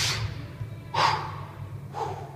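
Two short, forceful breaths about a second apart, the effort of a man holding and moving through a push-up on his fists, over quiet background music.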